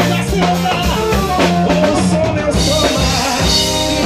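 Live band playing upbeat dance music, the drum kit keeping a steady beat under a melody. About halfway through, a cymbal wash comes in.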